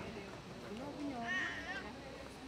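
Faint, distant voices of people talking in a crowd, with a brief higher-pitched wavering voice or call near the middle.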